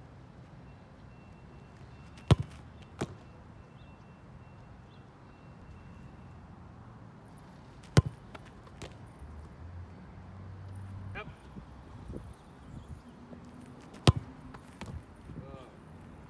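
A soccer ball kicked hard three times, about six seconds apart, each kick a sharp thud off the boot. A fainter thud follows the first kick.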